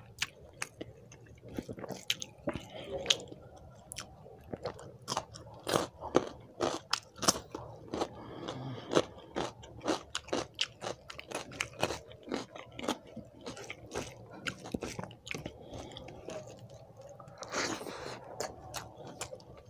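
Close-miked chewing of mouthfuls of rice, with many sharp, irregular mouth clicks and crunches.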